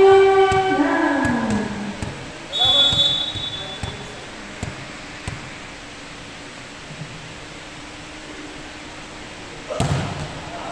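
Players' voices calling out in a large gym hall, then a short high squeal about three seconds in. Play goes quiet for several seconds over a low steady hum, and a sharp hit comes near the end as a volleyball is served.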